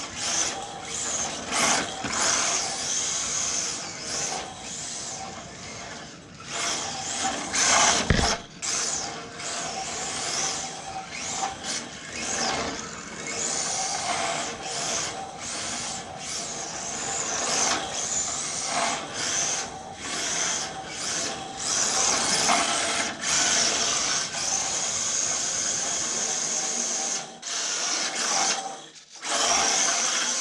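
Electric motor and gear drive of a 1/18-scale Panda Hobby Tetra RC crawler whining as it is driven in bursts on a 3S battery, rising and falling with the throttle, its drift tyres scrubbing on a concrete floor. A single sharp thump about eight seconds in.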